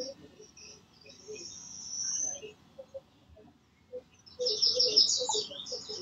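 A voice breaking up over a poor video-call connection: clipped, garbled fragments with chirp-like, hissy distortion, in two short stretches, the busier one about four and a half seconds in.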